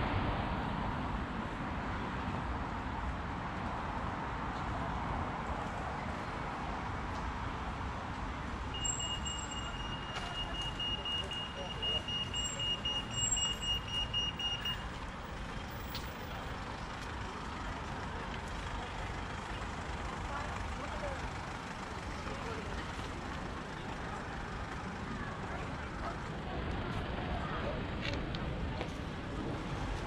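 Outdoor city street ambience: road traffic and passers-by talking. A steady high electronic tone lasts about six seconds near the middle.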